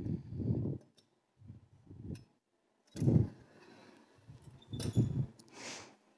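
Scattered handling noises: short, soft knocks and rustles every second or so as objects are moved and set down on a folding table, with a longer rustle near the end.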